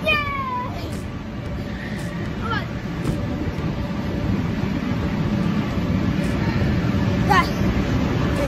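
Busy arcade din: a steady wash of crowd chatter and game machines, with a few short gliding squeals, one falling right at the start and rising ones about two and a half and seven seconds in.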